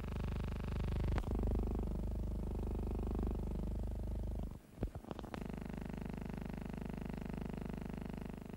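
Steady low hum of stacked, unchanging tones: the background noise of an old optical film soundtrack. A click comes about a second in, and just past halfway the hum drops out briefly with crackles at a splice, then carries on.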